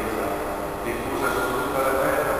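A man's voice intoning the liturgy in long held notes that step from one pitch to another.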